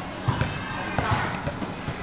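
A basketball dribbled on a tiled outdoor court: several sharp bounces, irregularly spaced.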